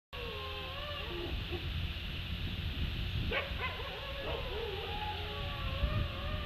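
Several wolves howling together: long overlapping howls that slide up and down in pitch, with a few short, sharp calls about halfway through.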